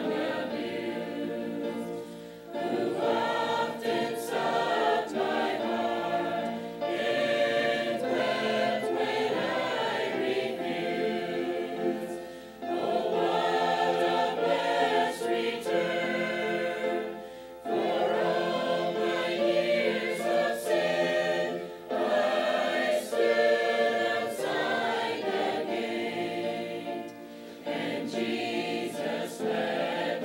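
Mixed choir of men's and women's voices singing, in phrases of about five seconds with short breaths between them.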